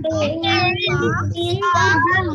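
Several children reading aloud at once, their voices overlapping in a drawn-out, sing-song chant, over a low hum, heard through video-call audio.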